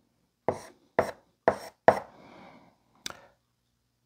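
Chalk writing on a blackboard: four sharp taps about half a second apart as the chalk strikes the board, a brief faint scrape, then one more tap about three seconds in.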